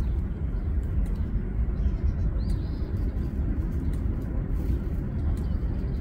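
Wind buffeting the microphone outdoors, with a few faint bird chirps about halfway through.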